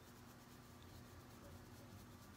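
Near silence: room tone with a low steady hum, and a faint soft rubbing of a makeup applicator buffing liquid foundation into the skin.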